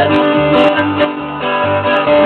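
Live country band playing: strummed acoustic guitar over electric bass, with fiddle, in a short instrumental stretch between sung lines.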